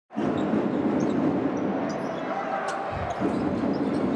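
Basketball being dribbled on a hardwood court, a few low thumps over the steady hum of an arena crowd.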